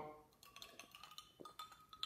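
Faint sounds of drinking from a clear plastic cup: quiet swallows and small scattered clicks and clinks as the cup is handled and lowered.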